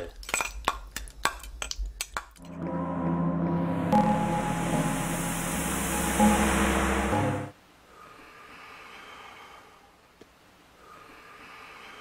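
Film title music and sound effects: a quick run of sharp clicks or hits for about two seconds, then a loud sustained chord with hiss that swells in and cuts off suddenly about halfway through, followed by a faint quiet tone.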